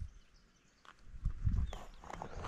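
Mostly quiet, with a few faint low thumps and rustles about a second in. The motorcycle's engine is not running.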